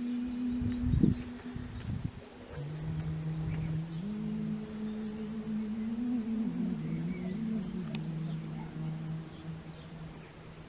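A soft, slow tune of long held low notes that step up and down in pitch, in the manner of humming or meditative music. There is a single thump about a second in, and faint bird chirps over it.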